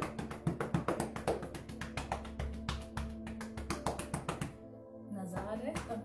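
Rapid, even patting of open palms against the body's chest and torso, several pats a second, over steady background music. The patting stops about three-quarters of the way through, and a woman's voice begins near the end.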